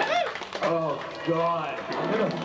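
Voices whooping after a song ends: about three long rise-and-fall "whoo" calls in a row.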